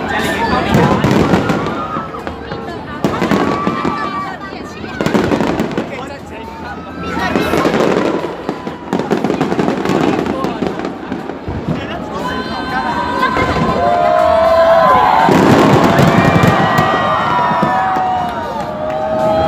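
Aerial fireworks bursting one after another with deep booms and crackle, over a crowd of people's voices and exclamations. The bursts grow louder and denser in the last few seconds.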